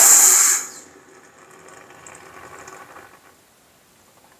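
Hot, freshly cast lead in its mould quenched in cold water: a loud steam hiss that drops away under a second in to a quieter sizzle, which fades out a couple of seconds later.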